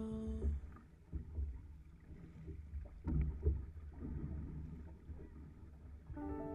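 Six-person outrigger canoe under way: paddles dipping and pulling through the water in irregular splashes over a low, uneven rumble of water and wind on the microphone.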